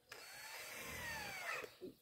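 Cordless drill driving a black screw into a wooden lath stake. It runs for about a second and a half, its motor pitch rising and then falling as it stops.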